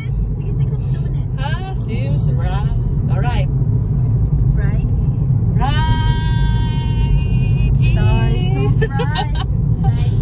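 Steady low rumble of a car's cabin on the move, with women's voices over it: short wordless vocal sounds and, about six seconds in, one long high held note lasting about two seconds.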